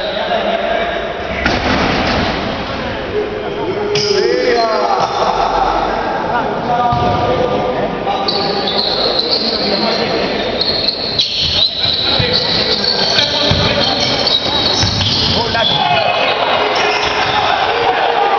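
Spectators' voices in a basketball gym, with a basketball bouncing on the hardwood court. Long high steady tones, a few seconds each, sound over the crowd.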